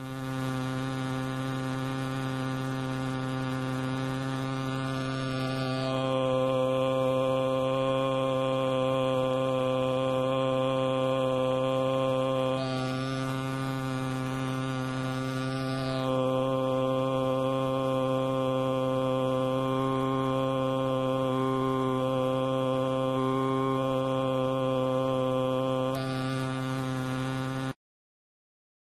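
A synthetic male /a/ vowel at one steady pitch of 130 Hz, made by a horn driver fed a Rosenberg glottal wave through a plastic vocal-tract model. The vowel colour shifts a few times (about five seconds in, for a few seconds mid-way, and again near the end) as the model is handled and its nasopharyngeal port opened and closed.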